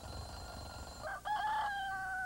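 A rooster crowing: one long cock-a-doodle-doo starting about a second in, held and falling slightly in pitch. It is preceded by a faint high steady tone.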